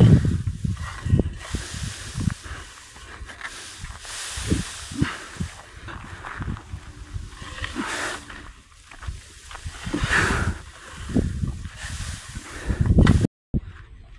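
Dry cut grass rustling and swishing as it is gathered with a long-handled hand tool, in several separate sweeps, with dull low thumps in between.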